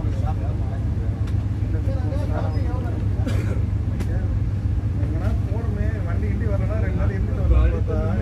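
Steady low rumble inside the coach of a moving Vande Bharat electric train, with indistinct passenger chatter throughout.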